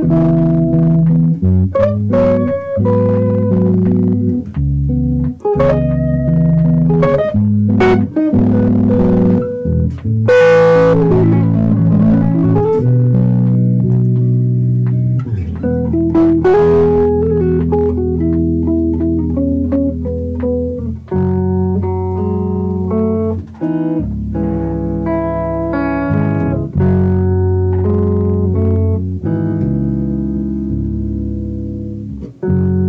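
An electric guitar and electric bass duo plays jazz live. The guitar plays single-note lines and chords over the bass, with a quick sliding run of pitches about a third of the way in.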